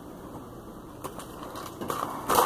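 Quiet room with a few faint light clicks about a second in and a soft rustle near the end, as a small candy packet is handled.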